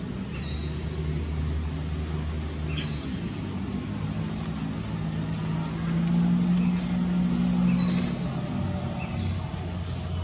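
A low, steady motor hum that grows louder about six to eight seconds in, with about five short, high bird chirps scattered over it.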